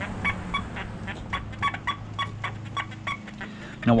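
XP Deus metal detector giving short, high beeps several times a second with no target under the coil: false signals from electromagnetic interference (EMI). A low steady hum runs underneath.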